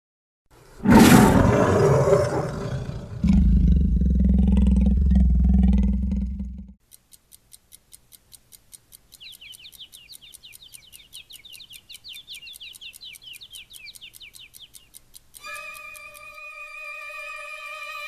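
Soundtrack intro of sound effects: a loud roar-like burst and a heavy low rumble, then fast even ticking with a warbling chirp over it, then a steady held electronic tone.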